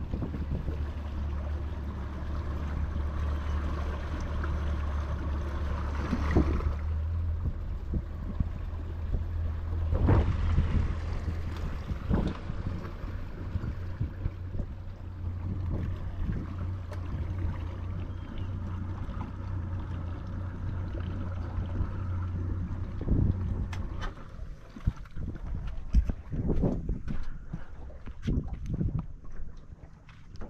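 Boat motor running steadily with a low hum under wind and water noise as the boat moves. The motor stops about 24 seconds in, leaving scattered knocks and clicks.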